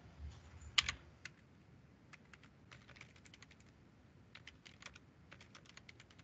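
Faint typing on a computer keyboard: scattered key clicks in short runs, with one louder click about a second in.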